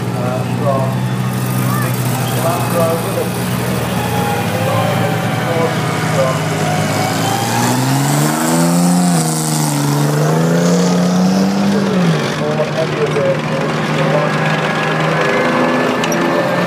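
Engines of vintage military vehicles running in a slow procession, a steady drone. From about halfway through, one vehicle passes close by and its engine note swells and wavers up and down for a few seconds.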